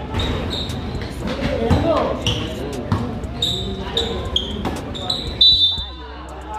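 Basketball bouncing and dribbling on a concrete court floor in a large covered hall, with short sneaker squeaks and a loud knock about five seconds in, over spectators' voices.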